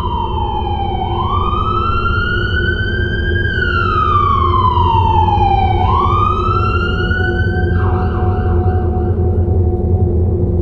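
An emergency vehicle siren wailing in slow, even sweeps, falling and rising in pitch about twice, then cutting off suddenly about eight seconds in. Under it runs a steady low rumble of street traffic.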